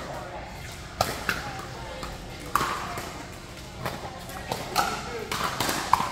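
Pickleball paddles striking a plastic ball in a rally: sharp pops, one about a second in, another at two and a half seconds and a quicker run of hits near the end, echoing in a large indoor hall.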